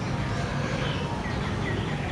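A few faint bird chirps, short and high, in the second half, over a steady low background rumble.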